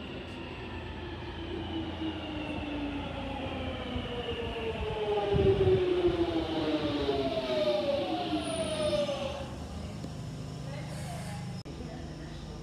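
London Underground Jubilee line 1996 Stock train running into the platform and braking to a stop. Its traction motors give several falling whines, loudest about five to six seconds in, then settle to a steady hum at standstill.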